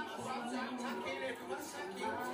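A voice speaking; no distinct non-speech sound stands out.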